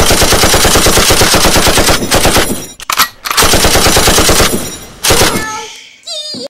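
Machine-gun fire sound: rapid automatic shots, loud, in a long burst of about two seconds followed by three shorter bursts.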